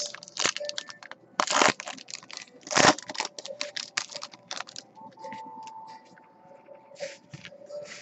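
Foil wrapper of a trading-card pack being torn open and crinkled by hand: a run of sharp crackles, loudest in the first three seconds and sparser after.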